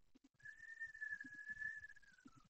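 A faint, steady high whistling tone, held for about a second and a half, dipping slightly in pitch as it fades near the end.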